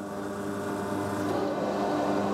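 Roof-bolting machine running underground in a low coal seam: a steady mechanical hum with a few fixed tones, growing slightly louder.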